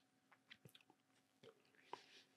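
Near silence, with a few faint, short clicks.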